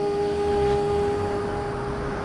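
A single held musical note that stays at one pitch and slowly fades, with a low vehicle-engine rumble swelling beneath it about halfway through.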